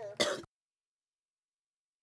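A voice breaks off with a short, sharp throat-clearing sound about a quarter second in. Then the audio drops to dead silence, as if the microphone feed were cut.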